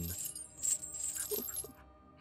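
A metal chain rattling and clanking in a few short jangles, a sound effect for a chained man shaking his fetters, over a faint music bed.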